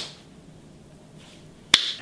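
Low room tone, then a single sharp finger snap near the end.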